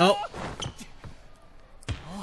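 Volleyball match audio from an anime: a long held shout cuts off just after the start, quieter voices follow, then a single sharp smack of the volleyball near the end.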